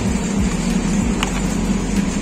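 Steady low hum of refrigerated supermarket display cases, with one brief click a little over a second in.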